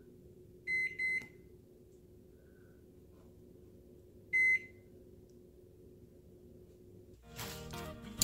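Microwave keypad beeping as its timer is set for 12 minutes: two short beeps about a second in, then one more beep a few seconds later, over a faint steady hum.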